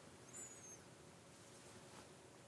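Near silence: room tone, with one faint high chirp about half a second in.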